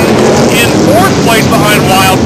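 Engines of a pack of figure 8 stock cars running together on the track, a dense steady engine noise, with a voice talking over it.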